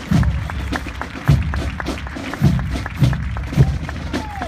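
March music with drums: heavy bass drum beats about once a second under quick, sharp taps.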